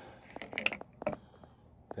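A few light plastic clicks and brief rubbing in the first second or so as an Apera PH20 pH pen is pulled up out of the neck of a plastic bottle.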